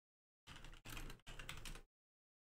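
Computer keyboard typing: a quick run of keystrokes starting about half a second in and stopping shortly before the end.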